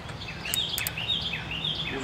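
A bird singing a run of quick, repeated downslurred chirps. About half a second in come a few sharp clicks as the garden-hose quick-release fitting is pushed into the mower deck's wash port.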